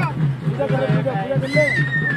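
Voices singing or chanting over a steady low hum, with a long high note that comes in about one and a half seconds in and slides slowly down.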